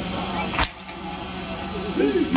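A crowd of mourners striking their chests in unison (matam): one sharp, loud slap about half a second in, over a murmuring crowd.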